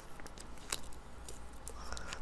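Faint, scattered small ticks and crackles of heat transfer vinyl being picked and peeled off its clear carrier sheet with a weeding hook, over a low steady hum.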